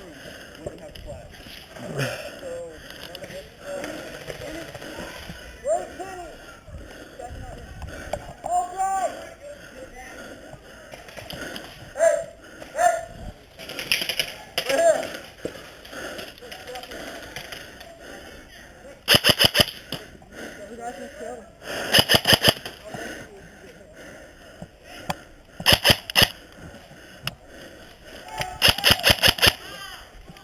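G&P airsoft electric gun (AEG) firing four short bursts of rapid shots in the second half, each a quick run of sharp clicks. Faint distant shouting can be heard in between.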